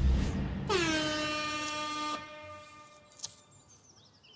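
A single horn-like blast. The note dips in pitch at the start, holds steady for about a second and a half, then fades out.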